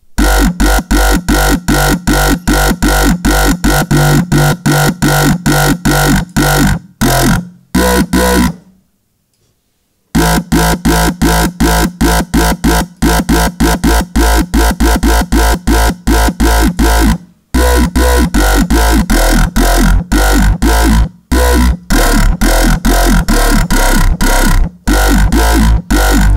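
Dubstep growl bass from an Ableton Operator FM synth patch, distorted and phased, playing a choppy rhythm of short stabs that change pitch, with a deep sine-wave sub bass underneath. It stops for about a second and a half partway through, then carries on.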